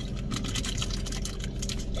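Steady low hum inside a car cabin, with a quick run of light clicks and small taps over it.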